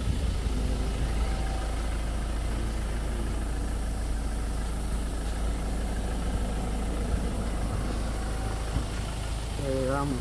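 A vehicle engine idling steadily, a constant low rumble.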